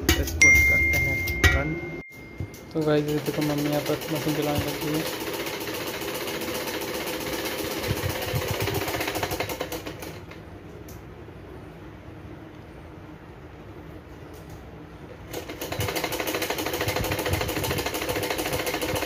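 Hand-operated Pooja sewing machine running, a fast, even clatter of the needle mechanism that goes on for several seconds, drops away, then starts again near the end. Knocks and rattles are heard in the first two seconds.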